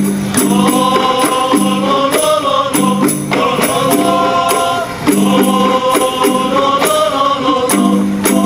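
A group of young male voices singing an Islamic qasidah together in long phrases, with short breaks about three and five seconds in. Rebana frame drums, struck by hand, keep a steady rhythm underneath.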